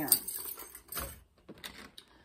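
A bunch of house and car keys jangling and clinking for about a second, then a few faint clicks.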